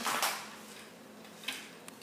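Quiet room tone with a faint steady hum, and a light click about one and a half seconds in, followed by a weaker one.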